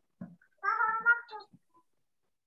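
A single high-pitched call, like a meow or a child's drawn-out cry, lasting about a second and preceded by a faint click, heard through a video-call connection.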